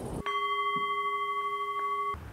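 A steady, bell-like tone of several pitches sounding together in a film trailer's soundtrack. It starts about a quarter second in, holds at an even level without dying away, and cuts off abruptly at the end.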